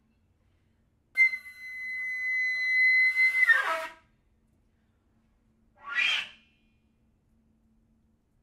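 Concert flute holding one high, breathy note for about two seconds, swelling, then breaking into a quick falling flurry; a short breathy burst follows about two seconds later, with silences between the gestures.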